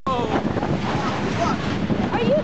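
Wind buffeting the microphone as a wooden roller coaster train runs along its track, with a steady rattling rush and a few short cries from the riders.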